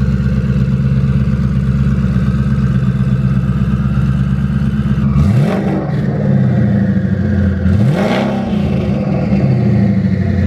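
2019 Mustang GT's twin-turbo 5.0 Coyote V8 idling through a Corsa Xtreme catback exhaust. It is revved sharply twice, about five seconds in and again about eight seconds in, and each time the revs fall back toward idle.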